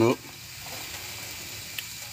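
Sliced bell peppers and onions sizzling in oil in a pan on a small wood stove: a steady, soft frying hiss, with one light click near the end.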